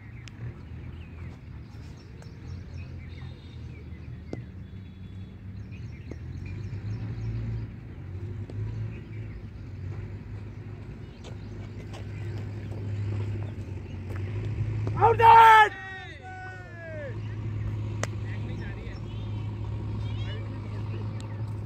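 Open-air cricket-ground ambience: a steady low hum with a few faint chirps and clicks. About fifteen seconds in comes a single loud shout from a player, falling in pitch as it trails off.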